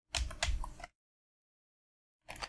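Computer keyboard keystrokes: a short flurry of several key presses within the first second.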